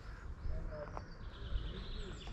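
Small birds chirping faintly in the trees, a few short calls, over a steady low rumble of outdoor noise on the microphone.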